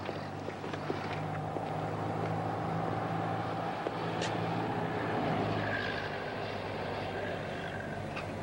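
Street ambience of steady passing traffic with a low engine hum beneath it, and a few small clicks, the clearest about halfway through.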